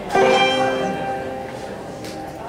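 Music: a chord on a plucked string instrument, struck once just after the start and left to ring, fading slowly.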